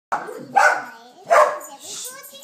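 Two short, loud vocal calls, about three-quarters of a second apart.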